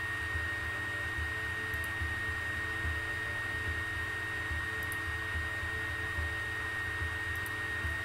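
Steady background hiss and hum with a thin, constant high whine, broken only by a few faint clicks.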